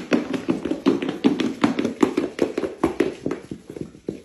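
A rapid, irregular series of light taps or clicks, several a second, fading out near the end.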